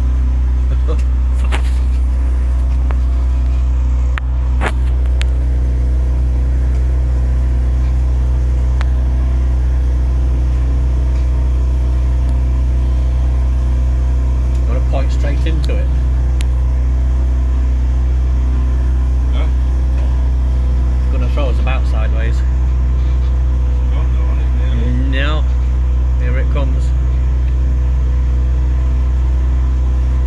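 A boat's motor running steadily under way, giving a loud, unchanging deep drone with a hum of steady tones above it.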